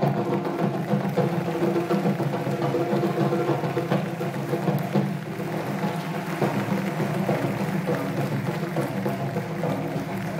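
Percussion ensemble of several marimbas with drums playing a fast, dense, steady rhythmic passage, many mallet strikes over sustained low marimba tones.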